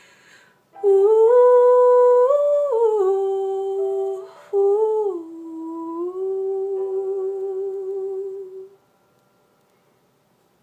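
A woman humming a slow closing melody with her lips closed, moving in steps between a few held notes. There is a short break for breath about four seconds in, and the humming stops about a second before the end.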